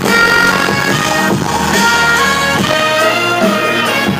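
Loud live music over a concert sound system, recorded from within the crowd, with a melody of long held notes.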